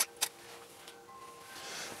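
Two sharp, short clicks about a quarter of a second apart as the water-drop photography rig fires, over faint steady background tones.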